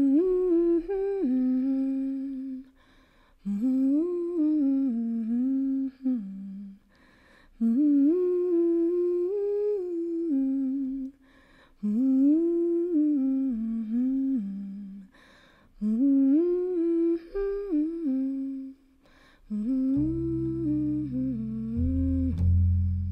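A woman humming a slow wordless melody in six short phrases, each rising and stepping back down, with brief pauses between them. Near the end a low plucked double bass note comes in under the voice.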